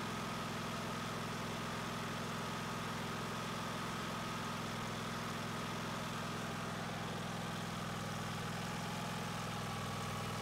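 Engine running steadily at an even idle on wood gas from a gasifier, through a servo-controlled throttle body, with a faint steady whine above the hum.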